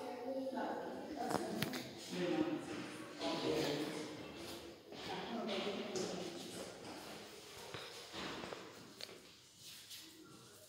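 Indistinct talking by people nearby, which fades out near the end.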